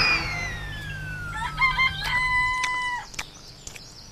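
A whistling tone glides steadily down in pitch over the first two seconds, like a diving plane, over a low rumble. Then a rooster crows: a few short notes and a long held last note that stops about three seconds in.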